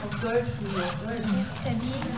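Children talking in a classroom, with sheets of paper rustling as they are handled.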